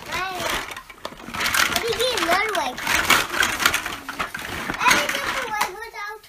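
Young children's wordless voices, short calls and babble, over the clatter and rustle of large plastic toy building blocks being handled.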